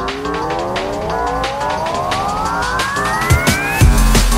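Electronic background music with a steady beat, over which a long tone rises steadily in pitch, building up until heavy bass beats come in near the end.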